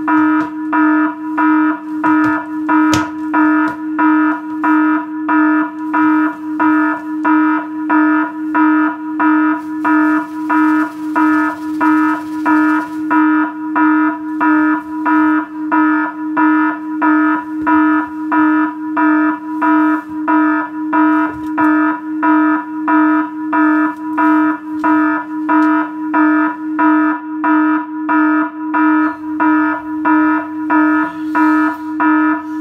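Electronic alarm-clock sound effect: a pulsing electronic tone beeping evenly a little more than once a second, unchanging throughout.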